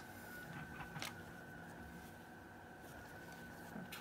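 Quiet handling of thin string being wound around a bundle of tzitzit strings, with one light tick about a second in, over a steady faint high-pitched whine of room tone.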